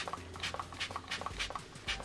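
Pump-action bottle of Anastasia Dewy setting spray misting onto a face: a quick run of short, sharp hisses.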